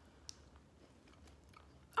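A person biting into a chocolate-covered caramel and cookie bar: one faint crisp crunch about a quarter second in, then quiet chewing.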